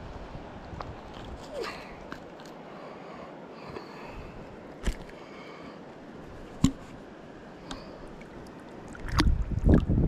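Soft steady flow of a small river, with a few sharp clicks while a small smallmouth bass is handled, and a burst of low rumbling near the end.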